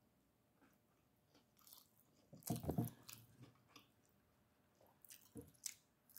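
Close-up eating sounds of a person biting and chewing food taken by hand. The sounds are mostly faint, with a loud cluster of bites and chews about two and a half seconds in and a smaller cluster near the end.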